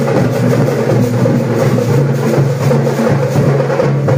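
Loud, continuous drumming with a dense, fast beat over a steady lower tone.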